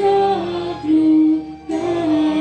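A hymn sung by voices in unison, slow held notes stepping from one pitch to the next, with a short breath-like dip and a new phrase starting near the end.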